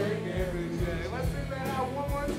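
Live worship band playing a song: drum kit, electric guitars and keyboard, with voices singing over it.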